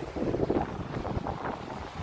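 Wind buffeting the microphone, a gusty low rumble that rises and falls.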